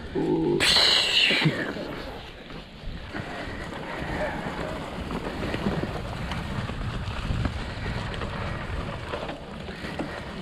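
A short, loud voice-like sound about half a second in. Then an e-mountain bike's tyres roll steadily over dry leaf litter, with wind rushing on the camera microphone.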